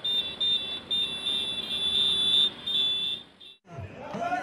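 Street traffic noise from a stream of auto-rickshaws: a steady hiss with a high-pitched whine over it, cutting off shortly before the end.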